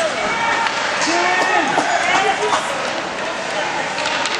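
Several spectators' voices shouting and calling at once in an ice arena, indistinct and overlapping, over a steady noisy din.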